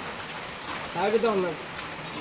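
A person's voice calls out once, briefly, about a second in, rising then falling in pitch, over a steady background hiss.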